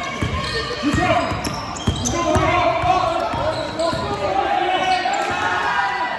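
A basketball being dribbled on a wooden sports-hall floor, its bounces landing as repeated thuds at an uneven pace. Players' voices call out over the top.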